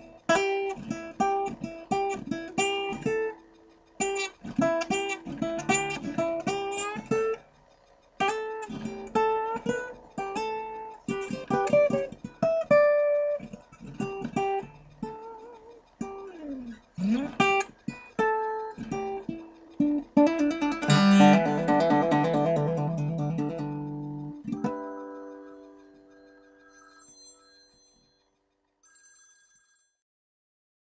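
Acoustic guitar playing blues: runs of picked notes, then a strummed closing chord that rings out and fades away near the end.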